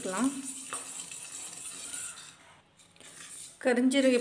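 Wooden spatula stirring nigella (kalonji) seeds as they dry-roast in an iron kadai: a soft scraping and rustling of seeds against the pan, quieter than the speech around it, easing off briefly a little past the middle.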